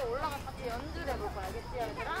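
Young children's voices talking indistinctly over one another, high-pitched and continuous.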